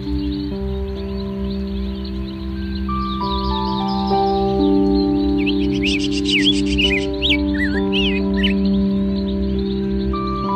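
Slow background music of long held notes, over shrill chirps and rapid twittering from a flock of lovebirds, busiest from about three to eight seconds in.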